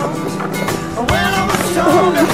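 Background rock music with a male voice singing, the vocal line coming in about halfway through.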